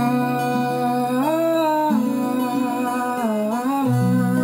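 A man humming a wordless vocal melody over acoustic guitar accompaniment; the voice glides up about a second in, comes back down around two seconds, and dips again near the end.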